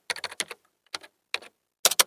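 Keyboard typing sound effect: a quick run of key clicks in the first half second, then a few scattered keystrokes, the loudest ones near the end.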